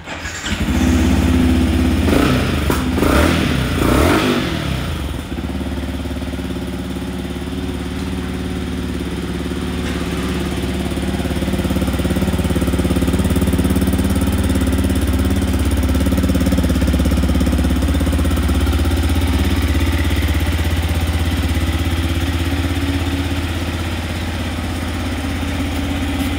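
Yamaha XSR155's single-cylinder four-stroke engine starting, revved three times in the first few seconds, then settling into a steady idle.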